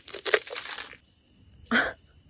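Hand-twisted bottle pepper grinder crunching peppercorns in a quick run of short crackly bursts, then going quiet. The grinder is malfunctioning and letting coarse peppercorn pieces through. A single louder rustle or huff comes near the end.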